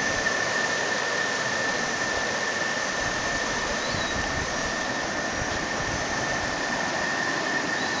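Water running over rock slabs and through shallow rapids: a steady rushing, with a thin steady high whine underneath it.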